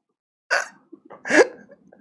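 A man laughing in two short, breathy bursts about a second apart, after half a second of dead silence.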